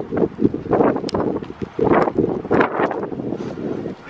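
Wind buffeting the camera microphone, with uneven swells of rustling and footsteps while walking and carrying bags.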